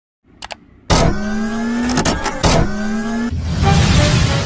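Synthesized intro sound effects: two faint clicks, then sharp hits each followed by a held electronic tone that rises slightly in pitch, ending in a swelling whoosh.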